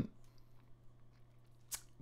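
Near silence: faint room tone with a steady low hum, and one short faint noise near the end.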